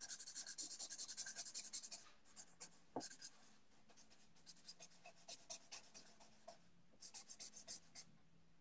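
Pen drawing quickly, a faint run of scratchy strokes, dense for the first two seconds and then in shorter bursts, with a single sharp tap about three seconds in.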